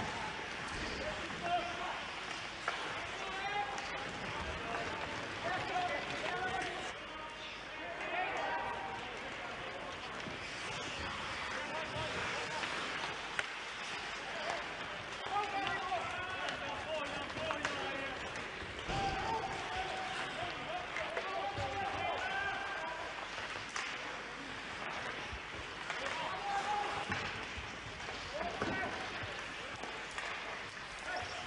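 Ice hockey play in an empty arena: skates scraping the ice and sharp knocks of sticks and puck, with short voices calling out now and then.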